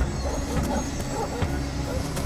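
Film soundtrack: a dark score over a heavy low rumble, with rough growl-like sounds and a few sharp clicks mixed in.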